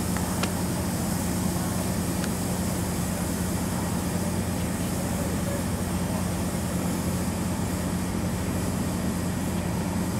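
Diesel-powered MARC commuter train standing at a station platform, its locomotive idling with a steady low drone and a constant hum.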